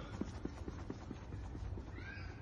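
A sprinter's running footsteps on artificial turf: quick, even, faint footfalls, about five a second, over a low steady rumble.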